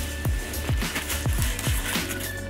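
Background music with a steady, quick beat of deep kick drums, about four a second.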